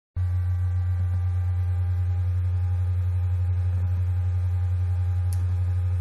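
Steady low hum of a laptop's cooling fan picked up by the laptop's built-in microphone, with faint thin whining tones above it.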